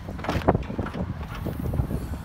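2010 Chevrolet Equinox liftgate being opened: the latch releases with a sharp click about half a second in as the hatch is lifted. Wind rumbles on the microphone.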